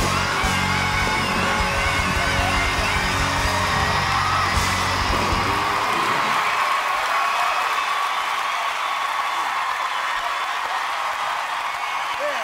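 Rock band and singer ending a song on a held final chord, which stops about halfway through. A studio audience then cheers and applauds, with whoops and yells.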